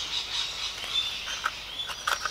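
Steady, high-pitched animal chirping in the background, with a few light taps of small cardboard spark plug boxes being handled, about one and a half seconds in and again near the end.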